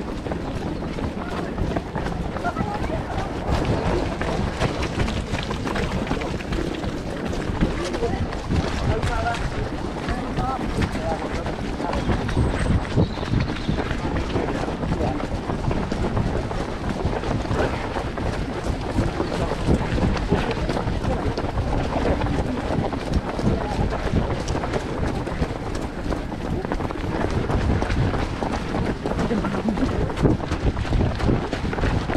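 A pack of runners jogging on a tarmac path, with steady footfalls, wind buffeting the microphone, and indistinct chatter from the runners around.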